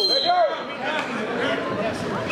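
Voices of spectators and coaches talking and calling out, echoing in a gymnasium, with a brief high steady tone at the very start.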